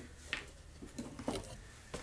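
Faint, scattered small clicks and rustles of electrical wire and a hand crimping tool being handled.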